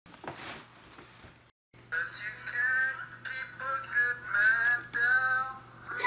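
Tissue paper and gift bags rustling for the first second and a half, then after a brief cutout a person singing over a low steady hum.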